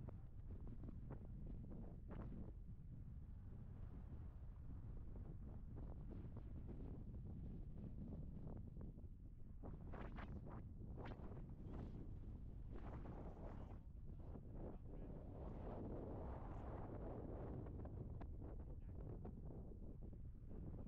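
Wind buffeting the microphone, a steady low rumble, with a few faint clicks about halfway through.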